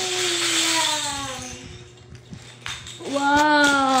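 A young child's voice making two drawn-out wordless vocal sounds, each sliding down in pitch. The first comes at the start with a breathy, hissy onset; the second begins about three seconds in.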